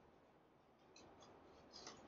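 Near silence, with a few faint ticks about a second in and a short soft rustle near the end, from stiff New Zealand flax leaves being handled and looped by hand.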